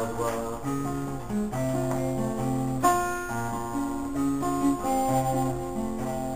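Acoustic guitar playing an instrumental passage on its own, its chords and notes changing about once a second.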